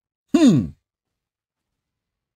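A man's brief wordless vocal reaction: a single short voiced sound that falls in pitch, about half a second long.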